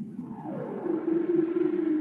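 Soundtrack of the intro title card: one long low tone that slides down in pitch near the start and then holds steady, over a low rumbling background.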